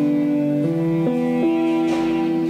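A slow Celtic-style melody played on an iPad music app set to a pentatonic scale, held electronic notes following one another about every half second.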